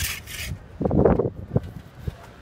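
Trowel scraping and rubbing wet cement mortar on a masonry wall top: a short hissing scrape at the start, then a louder, lower rubbing stroke about a second in.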